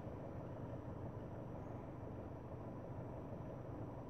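Faint steady low hum inside a stationary car's cabin.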